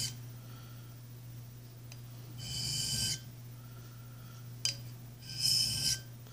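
A plane iron stroked along a bench sharpening stone: two short scraping strokes of steel on stone, one about two and a half seconds in and one near the end, each under a second long.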